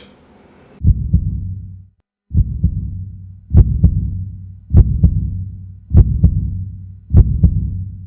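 Deep double thumps, like a heartbeat, repeating about every 1.2 seconds, each pair trailing off in a low hum. They start just under a second in, with one short silent gap near two seconds.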